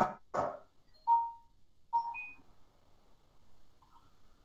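Two clipped voice fragments over a video call's line, then two short beep-like electronic tones about a second apart, the second followed by a brief higher blip. A weak internet connection is breaking up the call audio.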